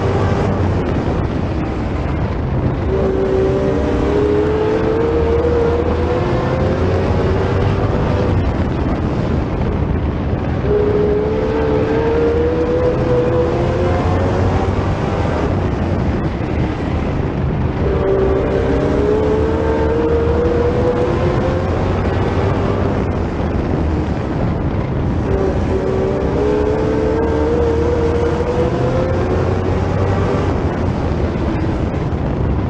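Sportsman stock car engine at racing speed, heard onboard: its note climbs along each straight and drops back into the turns, four times over.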